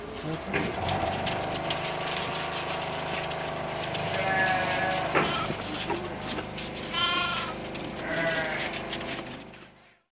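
Sheep bleating: a few calls, the loudest about seven seconds in. The sound fades out near the end.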